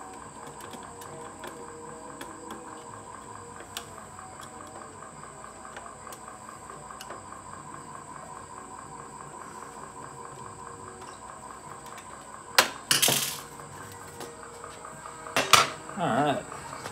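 Small metallic clicks and scrapes as the metal top cover of an Akai CR-80T 8-track receiver is worked loose, with two loud metal clatters near the end as the lid comes off. A faint steady high whine runs underneath.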